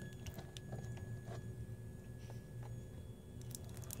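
A magnet is being handled against a toroid transformer core, giving a few faint clicks and taps. Under them runs a steady low electrical hum with a faint high whine from the bench setup.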